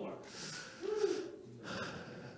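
A man breathing in sharply into a handheld microphone, twice, with a brief low vocal sound between the breaths.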